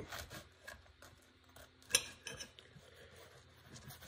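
Table knife cutting through a small pizza's crust and tapping and scraping on a plate in short scattered strokes, with one sharp clink of knife on plate about two seconds in.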